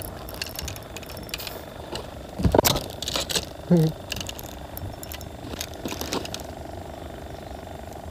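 Handling noise while a small fish is swung aboard a wooden fishing boat: scattered light clicks and rustles, with a louder knock about two and a half seconds in, over a steady low hum.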